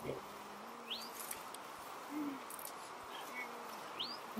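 Quiet background hiss with two brief rising chirps, one about a second in and one at the end, and faint distant voices.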